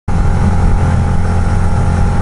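2006 Harley-Davidson V-Rod Night Rod's liquid-cooled V-twin running steadily while riding at speed. Its low, even drone is mixed with rushing wind and the hiss of tyres on a wet road.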